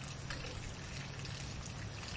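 Steady trickle of water draining out of an above-ground pool pond, with a faint steady low hum underneath.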